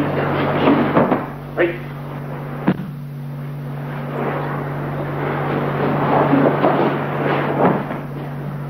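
Steady low hum and hiss of an old film soundtrack, with loose knocks and one sharp click a little under three seconds in.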